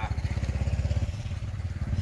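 New Holland TS90 tractor's diesel engine idling with a steady, even low beat, running smoothly with no knocking.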